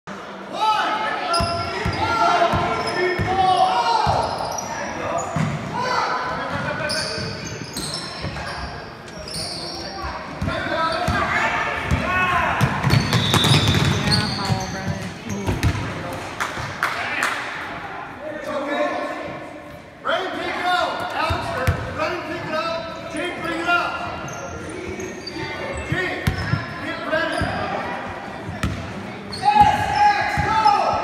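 Basketball game in a gymnasium: a ball bouncing on the hardwood court among the indistinct voices of players and spectators, all echoing in the large hall.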